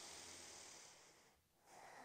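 Faint breathing close to a clip-on microphone: a soft breath over the first second, a short pause, then another breath starting near the end.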